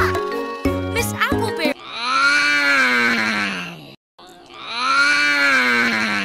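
A second and a half of children's song music, then a long drawn-out voice sound, rising and then falling in pitch, heard twice in a row with a short break between.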